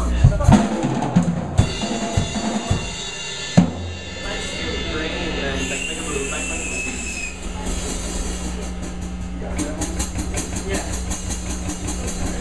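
A drum kit struck in a few scattered hits over steady amplifier hum, with the sharpest hits right at the start and about three and a half seconds in. Then the hum carries on, and a fast run of light ticks comes in near the end.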